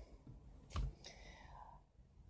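A speaker's mouth noises in a quiet pause between words: a short mouth click about a second in, then a soft breath.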